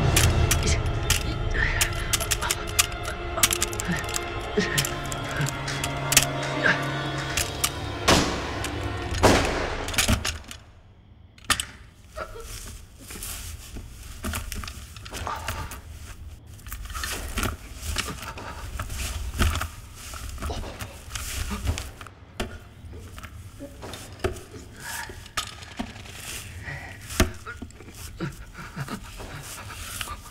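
Film soundtrack: music with sustained tones under a run of sharp cracks and knocks for about the first ten seconds. It then drops suddenly to a quieter stretch of scattered knocks and clicks.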